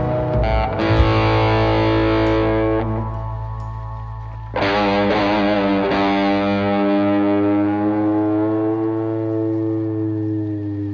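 Garage rock music: distorted electric guitar chords struck and left to ring out over a held bass note. A second chord comes in about halfway through and wavers through an effect as it dies away.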